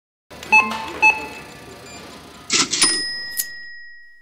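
Cash-register sound effect: two short dings about half a second apart, then a rattle and a clear bell ring that fades away.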